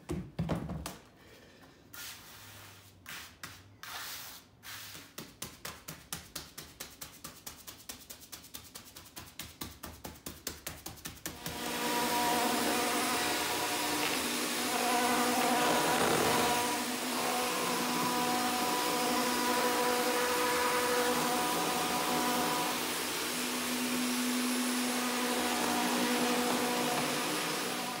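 An electric concrete vibrator, its flexible shaft held in wet countertop concrete to settle it, running with a steady motor hum from about eleven seconds in. Before it starts there is a run of short taps that get quicker.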